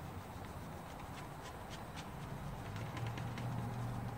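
Faint light ticks and rubbing as hands turn and wipe a painted chainsaw crankcase, over a steady low hum.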